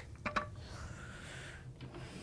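Parts of a child's classroom seat being handled: a few sharp clicks and knocks, two close together near the start, then a soft sliding scrape lasting about a second and a last faint click.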